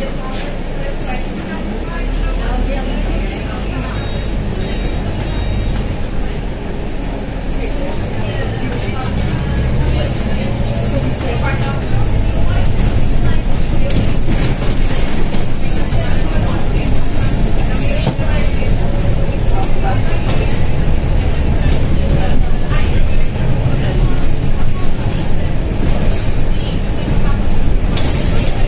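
Scania N320 city bus engine running low and steady as the bus drives, heard from the driver's cab. It grows louder partway through as the bus pulls on.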